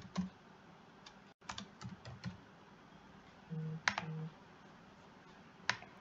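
Quiet, scattered keystrokes on a computer keyboard, with a short run of typing about a second in and a few single sharp clicks later. Two brief low hums sound near the middle.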